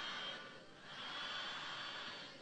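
A large audience's faint murmured response, rising and falling in hissy swells about a second and a half apart.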